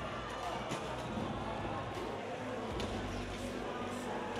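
Arena crowd in a gymnasium: a steady hubbub of indistinct voices, with a few faint knocks.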